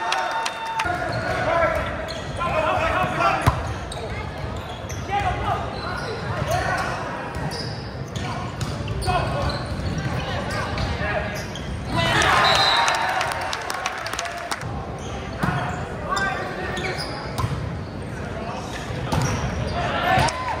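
Players' and spectators' voices calling and shouting in a gymnasium during a volleyball rally, with the sharp smacks of hands hitting the ball. The shouting is loudest about twelve seconds in.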